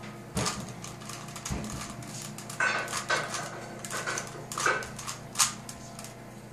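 Plastic Rubik's cube clicking as its layers are turned quickly by hand, with several short high-pitched cries from another source, a pair about halfway through and more near the end.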